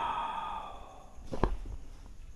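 A man's long, breathy sigh that slowly fades over about a second, followed by a single sharp knock about one and a half seconds in and a few faint clicks.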